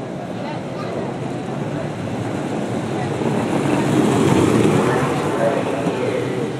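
Unpowered soapbox derby cars rolling past on asphalt, their wheels rumbling, growing louder to a peak about four seconds in and then easing off.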